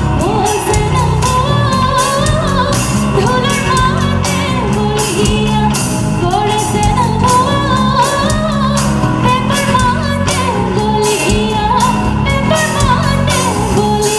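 A woman singing a Bihu song live into a microphone, backed by a band with a steady dhol drum beat and bass.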